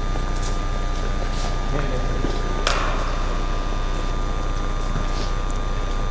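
Steady hum of hangar equipment with a faint high whine, and one sharp click a little before halfway through.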